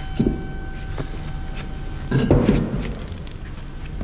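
Metal clinks and knocks as a lorry wheel that has just been taken off is handled: a short knock near the start and a louder clunk about halfway. A steady low hum runs underneath.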